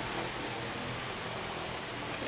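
Steady, even hiss of background room noise, with no distinct event.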